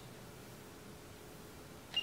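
Quiet room hiss, then right at the end a single short high beep from a handheld infrared thermometer gun as its trigger is pulled to take a reading.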